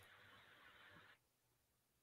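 Near silence, with a faint hiss that cuts off about a second in.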